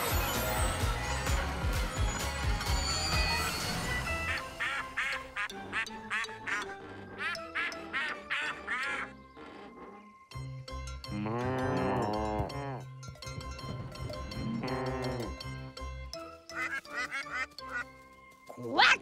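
Cartoon sound effects over background music: a toy-like train's steel wheels screeching and rumbling as it brakes, then a run of ducklings quacking, two long cow moos, and more quacks near the end.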